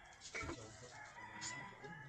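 A faint, drawn-out call with a steady pitch in the background, starting about a second in.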